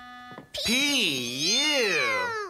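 A held musical note ends. Then comes a long wordless vocal 'ewww' of disgust at a dirty diaper's smell, made with noses held, its pitch swinging up and down twice.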